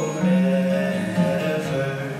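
Live acoustic song: a strummed acoustic guitar under a long held sung note, between sung lines.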